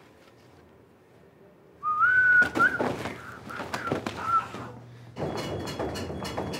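A person whistling: after about two seconds of near silence, a rising whistled note held for about half a second, then a few shorter whistled notes over light knocks.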